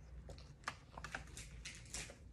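Faint, scattered light clicks and taps, about half a dozen spread irregularly through a quiet pause, the small sounds of objects being handled.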